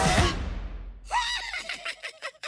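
A cartoon mouse's high, whinny-like snickering giggle. It starts about a second in with a rising-and-falling squeal, then breaks into quick, rapid chuckles.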